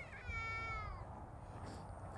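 A single faint, high-pitched call, lasting about a second and falling slightly in pitch.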